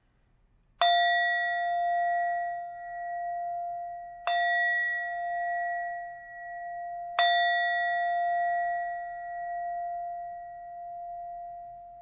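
A meditation bell struck three times, about three seconds apart. Each strike rings on in a clear, wavering tone that fades slowly, and the last one is still sounding at the end. It marks the close of the meditation.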